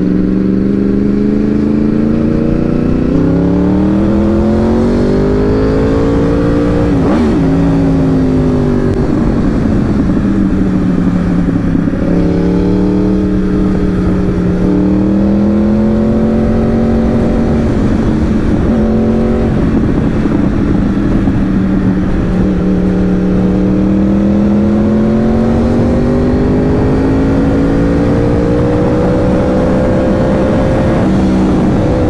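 Four-cylinder sport bike engine heard from the rider's seat while riding. Its revs climb and fall several times as the throttle is opened and eased, with a sharp break about seven seconds in. Wind rush on the microphone runs underneath.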